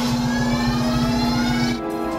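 Film sound effect of a satellite weapon powering up: a low pulsing hum under a steady tone, with slowly rising whines, all cutting off suddenly near the end, mixed with the film's score.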